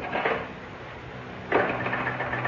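Telephone sound effect: the receiver lifted with a clatter, then rapid clicking from the phone starting about one and a half seconds in, on a line that has gone dead. A low steady hum lies underneath.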